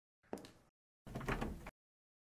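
An office chair being sat into and shifted: a short knock, then about a second in a louder scraping scuff lasting under a second.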